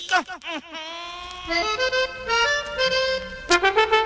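Accordion playing the song's introduction: a short laugh first, then slow held notes stepping upward, with a louder, fuller chord near the end.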